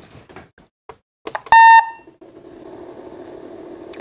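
Datascope Spectrum OR patient monitor giving a single short, clear beep as it powers up, about a second and a half in, after a few faint clicks. A faint steady hum follows.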